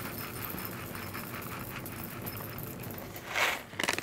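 Whole coffee beans pouring from a paper bag into a ceramic cup on a scale: a dense, steady patter of small clicks. Near the end, a short louder rustle.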